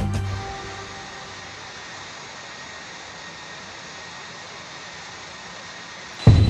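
Background music fades out in the first second, leaving a steady, even rush of jet engine noise from a taxiing airliner.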